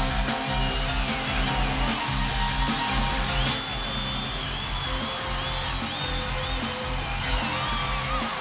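Live rock and roll band playing an instrumental passage: electric guitar over bass and drums with a steady driving beat. High wavering notes come in about halfway through.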